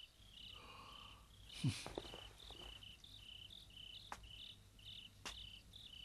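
Crickets chirping in short even pulses, about two a second, faint in the background. There is a brief low sound about two seconds in and a couple of soft clicks later.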